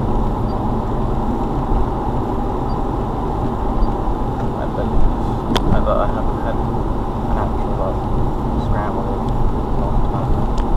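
Road and engine noise inside a moving car's cabin: a steady low rumble, with one sharp click about five and a half seconds in.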